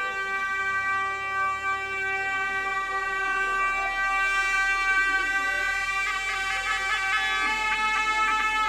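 A reedy, bagpipe-like wind instrument holds one long steady note, then breaks into quick, rapidly changing notes about six seconds in.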